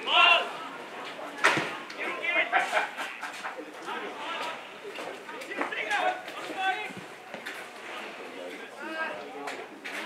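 Distant shouts and calls of footballers and spectators across an open ground during Australian rules football play, with a sharp knock about one and a half seconds in.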